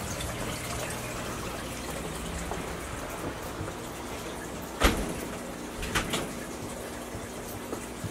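Steady trickle and bubbling of water from a running home aquarium's filter, with a faint low hum under it. Two soft knocks come about five and six seconds in.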